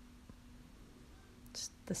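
Quiet room tone with a faint steady hum; about one and a half seconds in comes a short breathy hiss, and a woman's voice starts right at the end.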